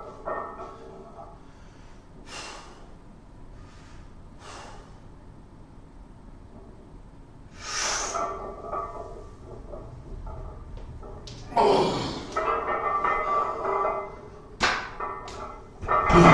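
Forceful breathing of a man under a heavy barbell during back squats: faint breaths at first, then loud exhalations with each rep, about 8 and 12 seconds in. Music plays faintly behind, and two sharp knocks come near the end as the bar goes back onto the rack.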